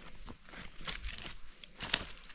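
Footsteps crunching over dry twigs, leaf litter and loose brick rubble, with a sharper click near the end.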